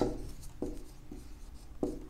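Marker pen writing on a whiteboard, in a few short separate strokes as letters are written.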